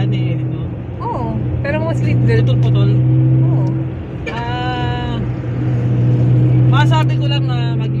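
Steady low drone of a car's engine and road noise heard inside the cabin while driving. Short bits of voice and laughter ride over it.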